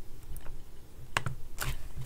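A few scattered keystrokes on a computer keyboard: one short click early, then a quick cluster of three or four clicks in the second half.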